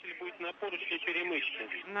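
A man's voice over a spacewalk radio loop, thin and cut off in the treble like a telephone line, with the words indistinct.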